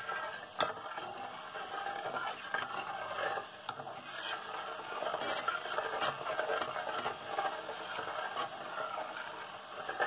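A metal spoon stirring melting sugar and water in a stainless steel saucepan on the hob, with a steady scraping and a few sharp clinks of the spoon against the pan.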